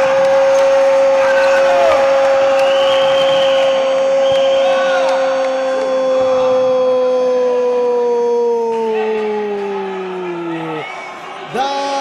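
Brazilian TV commentator's drawn-out goal call, 'Gol!', celebrating a goal: one loud held note lasting about eleven seconds that sinks in pitch and fades near the end. A fresh shout begins just before the end.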